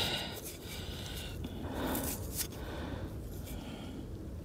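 Soft scraping and rubbing of fingers working soil off a freshly dug rein guide, a few brief scrapes over a steady background hiss.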